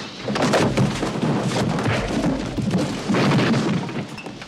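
Movie soundtrack playing loudly: a dense, rough noise with several sudden bangs or crashes and music underneath.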